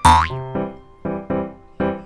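Comic edit sound effect right at the start: a quick falling, boing-like glide with a low thud. Under it, light electric-piano background music plays short notes.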